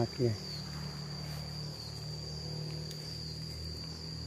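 An insect's steady high-pitched trill, held at one pitch, with a faint low steady hum beneath it.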